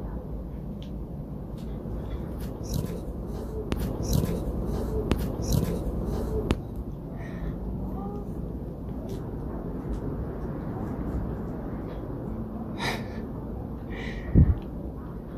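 A woman counting down the seconds softly, almost under her breath, over a steady low room hum, with faint scattered clicks. A brief sharper hiss comes near the end.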